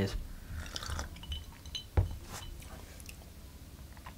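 Ice clinking in a rocks glass as a cocktail is sipped, with a few short high pings, then one sharp knock about two seconds in as the glass is set down on the bar.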